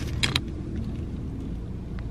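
Steady low hum of a car's idling engine, heard from inside the cabin. A few short clicks come about a quarter second in.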